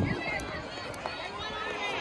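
Children's voices chattering faintly in the background, with no nearby voice close to the microphone.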